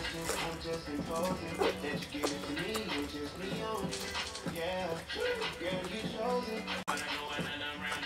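Background music with a melodic vocal line running through it.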